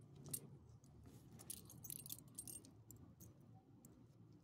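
Faint, intermittent jingling of the metal tags on a small dog's collar as the dog moves and lies down, with a sharp clink near the start and a cluster of jingles in the middle.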